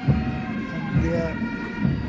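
Tracked BMP-2 infantry fighting vehicles driving past, a steady low engine and track rumble with a faint high whine, under a commentator's voice.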